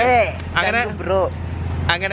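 Voices talking over a steady low rumble of a moving vehicle, as heard from inside it.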